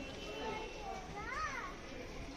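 Faint background voices of people, with children among them. One higher call rises and falls about a second and a half in.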